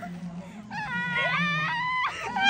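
A high-pitched squeal of laughter, starting a little under a second in and held steady for about a second, from someone who has just dropped into a foam-block pit.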